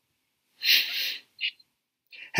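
A man's loud breath through the mouth, lasting about two-thirds of a second, followed by a short second puff of breath.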